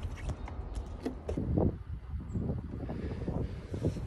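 Uneven low rumble of wind buffeting a phone microphone held out of a Land Rover Defender 110's window, with scattered knocks from the phone being handled against the roof.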